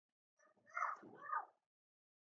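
A faint, short vocal call in two sliding, rise-and-fall notes, starting about half a second in and lasting about a second.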